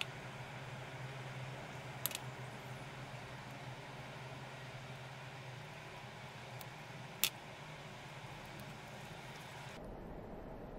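Two small sharp clicks of metal tweezers against the camera's lens guard, about two seconds apart near the start and a few seconds later, the second louder, over a steady low hiss and hum.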